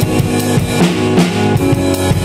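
Pearl drum kit played in a steady beat, with bass drum, snare and cymbal hits, over held keyboard chords that change a couple of times.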